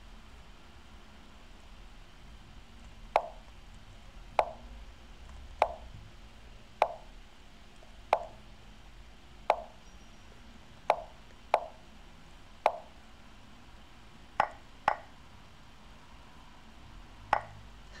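Lichess board move sounds from the chess site: about a dozen short, clicky plops in quick succession, one for each move played by either side in a fast bullet game.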